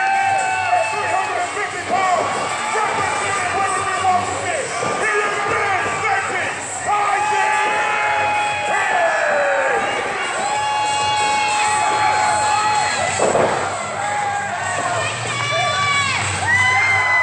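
Small live crowd of wrestling spectators shouting and cheering, with several long drawn-out yells and children's voices among them.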